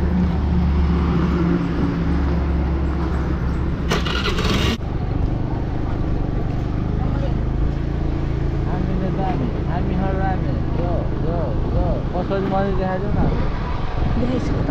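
Motor scooter engine running with a steady low hum. A brief burst of noise about four seconds in gives way abruptly to the scooter being ridden on a dirt track, its engine and road noise running under voices.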